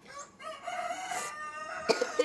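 A rooster crowing once, a long call lasting about a second and a half, with a sharp click near the end.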